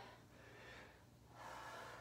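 A woman's faint breathing between squat repetitions: two soft breaths, the second and slightly louder one near the end.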